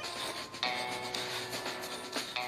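Chalk scraping against a brick wall as it is drawn across the surface: a continuous gritty rubbing.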